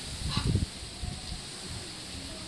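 Gusts of wind rumbling on the microphone, with a short animal call about half a second in and a faint thin call just after.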